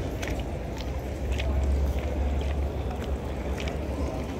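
Wind rumbling on the microphone of a camera carried on foot, with light, irregular footsteps on cobblestones and faint voices of passers-by.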